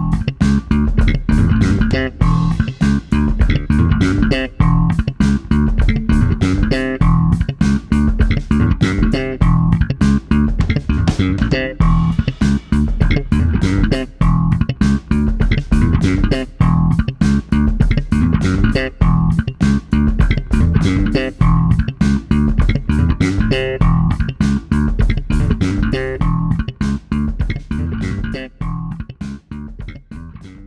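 Electric bass played with slap technique: a fast funky riff of thumb slaps and popped notes, recorded direct through a preamp. The playing dies away near the end.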